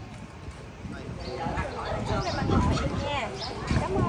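Several people talking at once, casual overlapping voices that grow louder about a second in.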